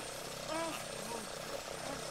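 Small gasoline lawnmower engine running steadily, heard faintly in a film soundtrack, with faint grunts of a struggle over it.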